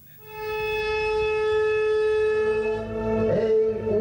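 Music: one long, steady held note on a wind instrument that fades in, joined about two seconds in by lower notes and a moving melody.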